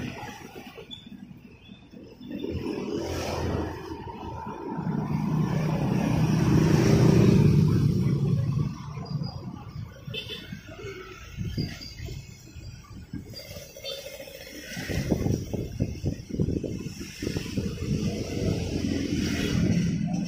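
Road traffic: a motor vehicle's engine passes close by, swelling to its loudest about seven seconds in and fading, with more traffic rumble in the last few seconds.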